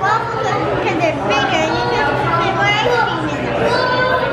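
People talking and chattering, with several voices overlapping in conversation.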